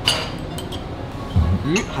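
A metal ladle clinks once against the pot with a short ring, followed by a couple of faint light clicks, over steady background music.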